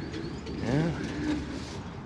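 A bird's low cooing call: one rising-and-falling note a little under a second in, then a short steady low note.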